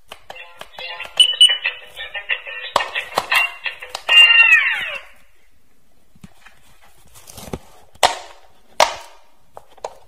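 Electronic quick-push pop-it game toy playing a beeping electronic melody while its silicone buttons are pressed with quick clicks, ending about five seconds in with a falling sweep of tones. After that, a few sharp clicks and taps as the toy's buttons are pushed and it is handled.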